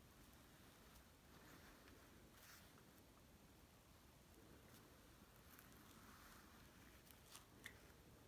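Near silence: faint scratching of a wax stick crayon drawing lines on paper, with two small ticks near the end.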